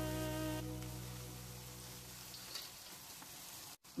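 Background music with held notes fading out over the first two seconds, leaving the faint sizzle of egg-coated sempol skewers deep-frying in hot oil. The sound drops out briefly just before the end.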